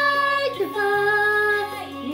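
A woman singing long held notes over accompaniment, the pitch stepping down once about three-quarters of a second in.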